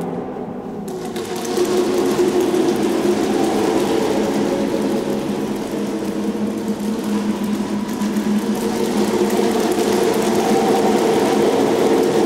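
A group of children's voices holding a dense cluster of steady tones, with a hissing, rapidly rattling noise layered over them from about a second in.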